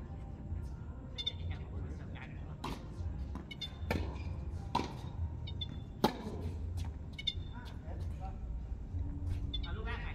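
Tennis ball struck by rackets in a doubles rally: four sharp pops about a second apart, the loudest about six seconds in. Short high squeaks recur throughout over a steady low rumble.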